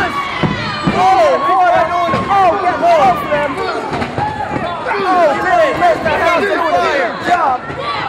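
Excited voices shouting over one another, with crowd noise and a few faint thuds.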